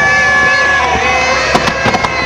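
Fireworks display going off, with a cluster of sharp bangs about a second and a half in, over a steady crowd din and held steady tones.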